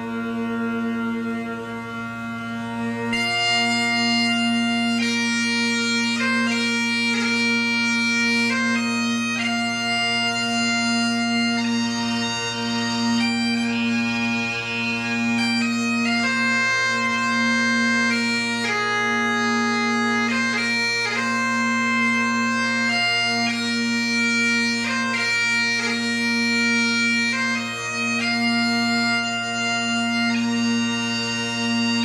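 Great Highland bagpipe played solo. The drones hold a steady low hum from the start, and the chanter's melody comes in over them about three seconds in and carries on through.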